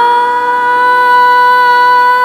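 A female voice holds one long, steady note in Indian classical style over a tanpura drone.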